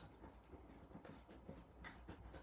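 Faint scratching and small clicks of a screwdriver tightening the retaining screws on the underside of a Wiser heat hub clipped onto a wall backplate, over a low room hum.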